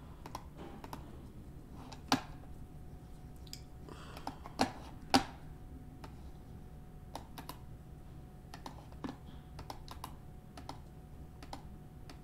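Computer keyboard being typed on in irregular, scattered keystrokes, with a few louder clicks about two seconds in and around the five-second mark, over a faint low hum.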